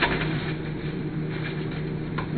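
Steady background room noise with a faint low hum, and a brief knock right at the start as a cardboard shipping box is handled.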